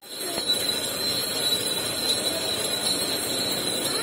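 Electric sugarcane juice machine running as cane stalks are fed through its crushing rollers: a steady mechanical din with a thin, high, steady whine over it.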